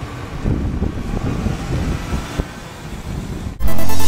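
Rumbling background noise without words, then loud electronic dance music with a heavy bass beat starts suddenly near the end.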